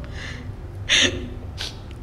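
A woman crying between words, taking three sharp gasping breaths; the loudest comes about a second in.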